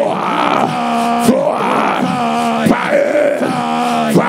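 Loud, fervent vocal prayer: a raised voice chanting and holding drawn-out, strained tones, with a short phrase repeating about every second and a half.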